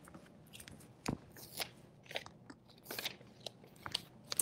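Faint handling noises: scattered light clicks, rustles and knocks as someone moves about and handles things in a small room, the most distinct knock about a second in.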